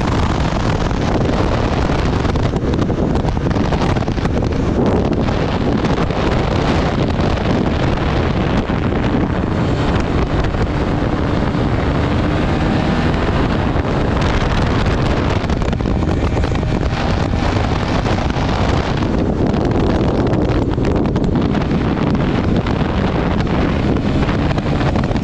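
Honda CRF450RL's single-cylinder four-stroke engine running at speed, its pitch rising and falling with the throttle, under heavy wind buffeting on the microphone.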